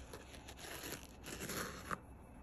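A sharpened knife blade push-cutting through a hanging sheet of paper towel: a soft papery tearing rasp that builds through the second half, with a small click near the end.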